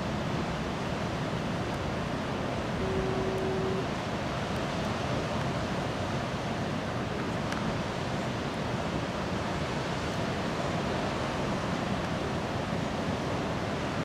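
Steady rushing noise of heavy ocean surf breaking, with wind. A brief steady tone sounds for about a second, about three seconds in.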